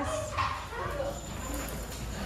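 A dog barks briefly about half a second in, over a low background murmur of voices.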